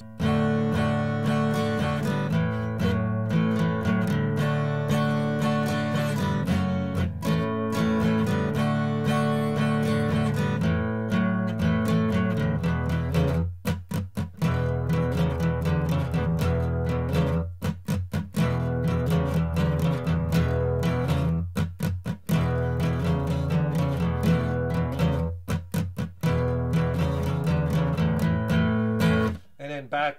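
Steel-string acoustic guitar strummed through a rock chord progression: D, A and A6 chords and an E5–E6–E7 change, in a bluesy shuffle rhythm, with a few very short breaks. The playing stops about a second before the end.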